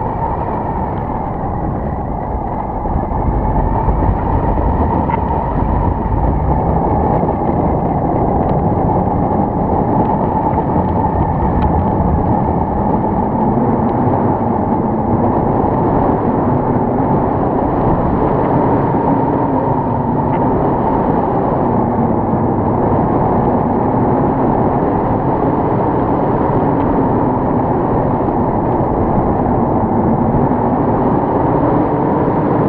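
Steady rush of wind over an action camera's microphone during a tandem paraglider flight, dull with nothing high-pitched, growing a little louder about three seconds in.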